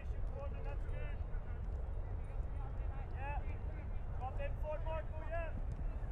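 Faint, distant shouts and calls of players across an outdoor soccer pitch over a steady low rumble.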